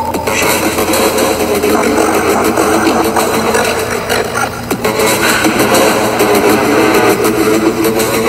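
Electronic industrial soundscape music: a dense, noisy texture with faint sustained tones underneath.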